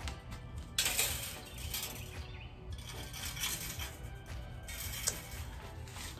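Metal butterfly wall decoration clinking as it is hung on a screw against a brick wall: a few light metallic clinks and handling noise, with soft background music.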